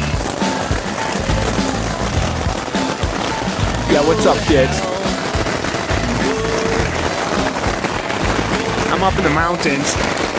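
Hail pelting the fabric of a pyramid tent, a dense rapid rattle of small impacts, heard from inside the tent with background music playing over it.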